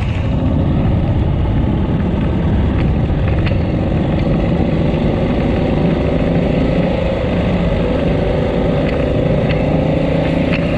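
Motorcycle engine running steadily under way, its pitch rising a little in the second half.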